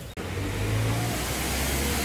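A car engine running close by on a city street: a low hum over a steady hiss of street noise, the hum dropping in pitch about halfway through.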